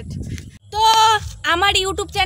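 A goat bleats once, a single loud call about half a second long. A woman's voice follows near the end.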